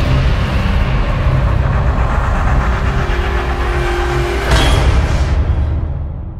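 Logo intro sound effect: a loud, deep rumble with a sharp burst about four and a half seconds in, starting to fade near the end.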